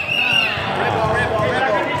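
Youth basketball game in a gym: voices of spectators and players with a basketball bouncing and feet moving on the court.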